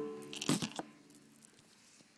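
The final piano chord dying away, with a short clatter of knocks and rattles about half a second in as the camera is picked up and moved. After that only a few faint ticks.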